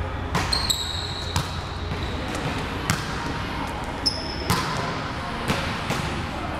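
Volleyballs being struck and bouncing on a gym court: about seven sharp smacks and thuds at irregular intervals. Two brief high squeaks come about half a second in and again about four seconds in.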